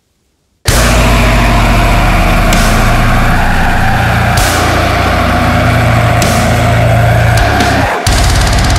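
A deathcore song kicks in abruptly after near silence, a little under a second in: heavily distorted, down-tuned guitars and bass over drums with a cymbal crash every couple of seconds. It drops out for an instant right at the end before going on.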